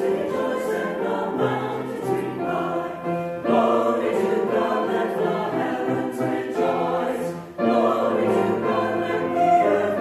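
Mixed church choir of men and women singing in parts with piano accompaniment. The phrases break off briefly about a third of the way in, and again about three quarters through.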